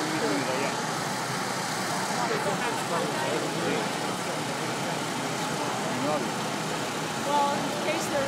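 Busy city street ambience: a steady din of traffic with the chatter of many people mixed in.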